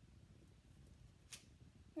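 Near silence: room tone, with one faint short tick about two-thirds of the way through as a clear acrylic stamp block is pressed onto card stock and lifted off.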